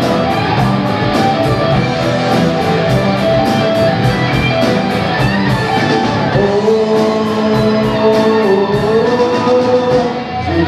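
Live rock band playing: electric guitars and bass over drums with a fast, steady cymbal beat. About six seconds in the cymbals thin out and long held guitar notes carry on.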